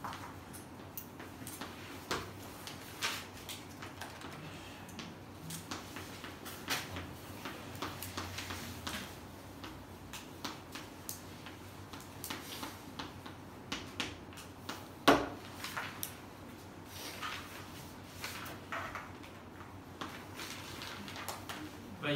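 Chalk writing on a blackboard: irregular taps and short scratches, with one louder knock about fifteen seconds in.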